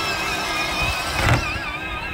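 Electric motors and gearboxes of two battery-powered ride-on toy vehicles whining as they drive over grass, the pitch of the whine wavering with their speed, over a low rumble from the plastic wheels, with a short louder rush about a second in.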